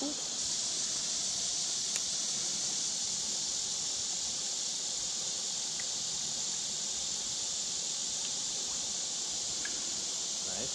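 Steady, high-pitched chorus of insects, unbroken and even in level.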